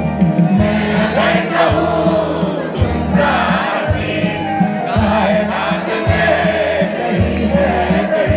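Live band music played loud over a PA: a male singer sings over guitar and a drum kit, with a low drum beat about once a second, and the crowd can be heard in the mix.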